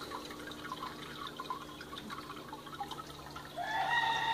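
Water trickling and dripping steadily as the powerhead-driven bucket filter returns water into the turtle tank, over a low steady hum. Near the end a rooster starts a drawn-out crow.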